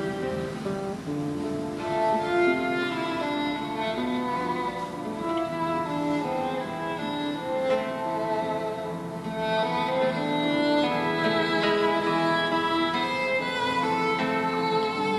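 Sad violin melody from a TV drama's background score, held notes over a soft accompaniment.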